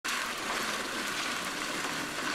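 Steady hiss of trailer tyres rolling over a gravel road.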